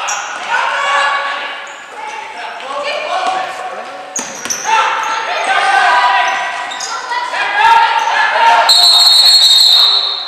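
Gymnasium basketball game: players and spectators calling out, with the ball bouncing on the hardwood floor. Near the end a referee's whistle blows one long, high blast, the loudest sound here.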